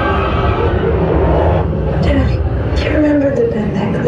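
Haunted-maze soundscape: a steady, deep rumbling drone with indistinct voices sliding in pitch over it.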